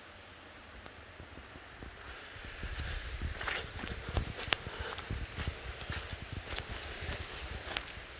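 Footsteps on a muddy, stony dirt forest path, crunching at a steady walking pace, starting about two and a half seconds in after a quiet stretch.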